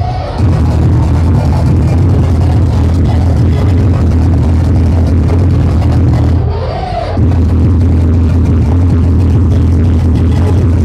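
Hardcore techno played loud over a club sound system, with a steady heavy bass beat. The bass drops out briefly twice, right at the start and about six and a half seconds in, and a short pitched sweep rises and falls in each gap.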